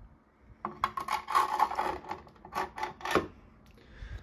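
Plastic parts of a model wind turbine's hub and blades rubbing and clicking together as they are handled: a dense run of scraping and clicks starting about half a second in and lasting about two and a half seconds.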